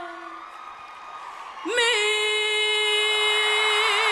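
A young woman's solo singing voice belting a ballad: one note trails off, and after a short pause she scoops up into a long, powerful held note that takes on a vibrato near the end.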